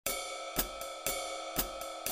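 Intro of an original blues track: a cymbal struck four times, evenly about half a second apart, over a steady ringing tone.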